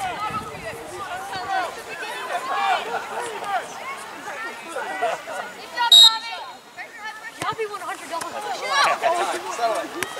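Spectators and coaches chattering along the sideline, with one short, loud, high-pitched blast of a referee's whistle about six seconds in, signalling a kickoff.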